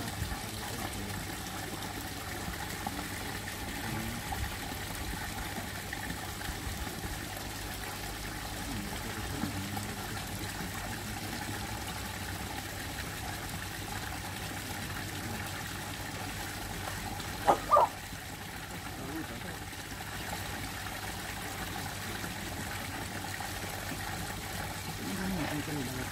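Steady trickle of water running into a koi pond, with a steady low hum beneath it. About two-thirds of the way through, two short sharp sounds close together stand out as the loudest moment.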